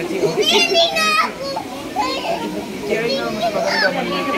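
A small child's excited high-pitched voice squealing and calling out without clear words, strongly around half a second to a second in and again near the end, over lower adult voices.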